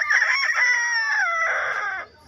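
A single long rooster-style crow, held for about two seconds: its pitch rises at the start, sags slowly downward and then cuts off abruptly.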